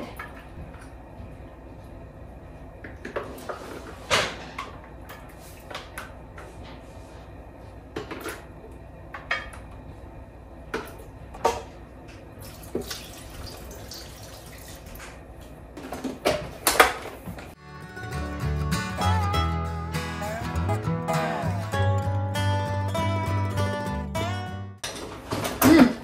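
A spoon and plastic containers clink and scrape in scattered taps as vegetables are scooped and poured into a blender jar. About 17 seconds in, background music with a bass line starts, and it cuts off suddenly about a second before the end.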